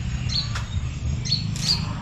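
Small yellow-bellied birds chirping: short, high calls repeated several times, over a steady low hum.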